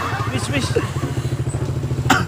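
A small engine idling steadily, with a fast, even pulse.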